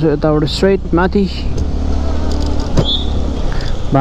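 Motorcycle riding along a wet street: a steady low engine and road rumble. A person's voice is heard in the first second or so, and a brief high tone sounds near the end.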